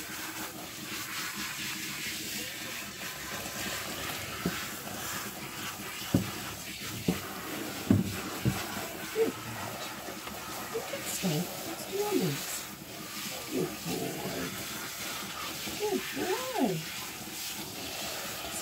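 Warm shampoo water spraying from a dog-grooming bath's handheld nozzle into a dog's wet coat: a steady hiss of spray, with a few light knocks.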